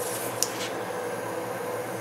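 Steady workshop room hum, with a brief cluster of light clicks about half a second in as a nail gun is picked up and handled on the bench.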